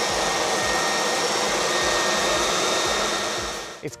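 Corded electric Stihl leaf blower running steadily with a high whine, then switched off and winding down just before the end.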